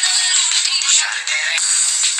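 Music playing loudly and steadily, thin-sounding with no bass.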